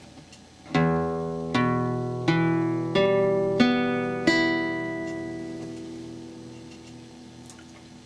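Nylon-string classical guitar sounding an E minor chord, plucked one string at a time: six notes about two-thirds of a second apart, each left ringing, then the whole chord fading away.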